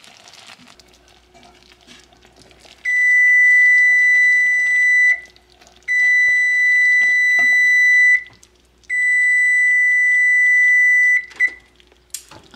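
A timer going off with three long, high-pitched beeps of about two seconds each, then a short final blip, signalling that the five-minute boil of the fudge mixture is done.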